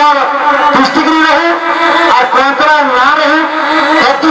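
A man singing through a handheld microphone, his amplified voice sliding between pitches and holding a long note about a second in.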